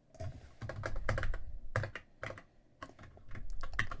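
Typing on a computer keyboard: irregular runs of keystrokes with short pauses between them, entering a change to a line of code.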